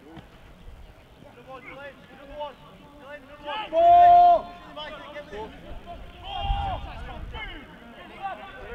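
Rugby league players shouting calls to each other across the pitch, with one loud, long held shout about four seconds in as a tackle goes in, and a second shorter shout with a dull thump near the end.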